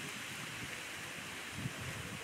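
Steady rushing hiss of outdoor background noise, like wind or running water, with faint low rumbles underneath.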